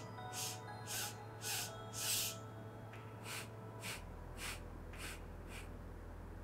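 A woman breathing through her nose in short, separate sips with pauses between them: the interrupted inhale and exhale of vilom pranayama. About two short breath sounds a second, with a break of about a second near the middle.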